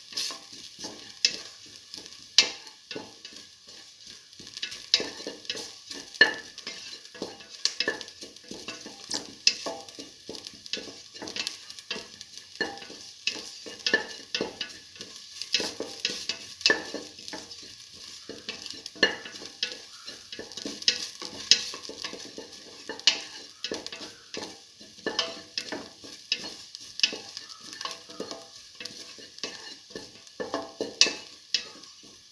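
Sliced shallots sautéing in oil in a steel pot: a soft sizzle under the repeated scrape and clink of a utensil stirring against the metal, about one or two strokes a second, uneven.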